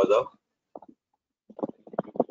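Only speech: a man lecturing, who says one word at the start, pauses for about a second, then makes short hesitant sounds before speaking again.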